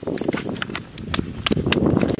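A large pot of broth boiling hard, with a low bubbling hiss and irregular sharp pops, about four a second.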